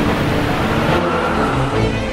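A car engine revving as it accelerates, in a loud, noisy mix.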